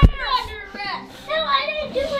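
Young children squealing and calling out in high voices during rough play-wrestling, with a thump right at the start.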